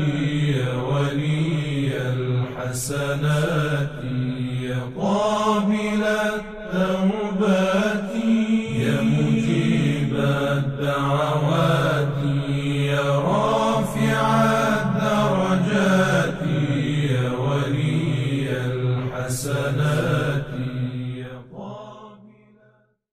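A solo voice chanting an Arabic supplication in a slow, melismatic style over a low sustained drone, fading out at the end.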